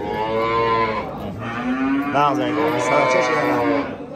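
Cattle mooing: two long moos, the second longer than the first.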